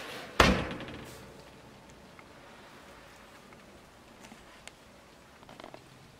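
Built-in motorhome oven door shut with a single loud thunk about half a second in, followed by a brief ringing tail.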